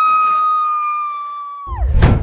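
Horror-film sound effect: a single high-pitched held tone that rises at the onset, holds steady while slowly fading, then slides steeply down in pitch near the end. A loud deep boom-like hit follows it.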